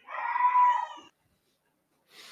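A single drawn-out animal-like call, pitched and about a second long, swelling and fading at the start; the rest is quiet.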